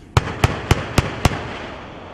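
XM813 30 mm automatic cannon firing a five-round burst at a steady rate of roughly four shots a second, the reports trailing off in a rolling echo.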